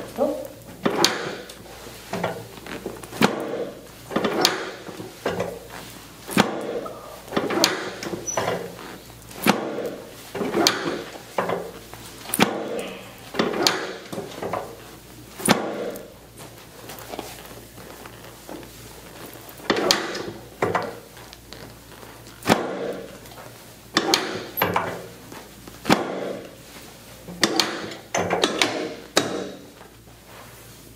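Chiropractic treatment table knocking sharply about twenty times at irregular intervals, mostly a second or two apart. Each knock is followed by a brief muffled sound, as the patient's bent leg is worked against the table.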